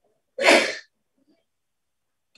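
A single short, forceful burst of breath from a person, lasting about half a second, near the start.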